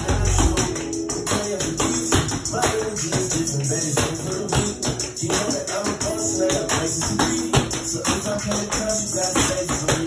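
Tap shoes clicking in quick, irregular runs on a hardwood floor over a hip-hop track.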